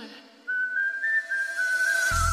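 Whistled melody line in a dance-music remix: after a brief near-quiet break, a single high whistled tune comes in about half a second in, holding and stepping between a few notes with a slight wobble, over a faint sustained lower note.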